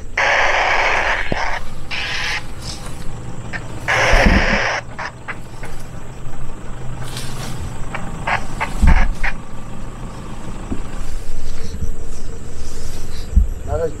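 A low, steady rumble of an idling off-road 4x4 engine. Over it come several loud bursts of hiss in the first five seconds, then scattered clicks and knocks near the vehicle.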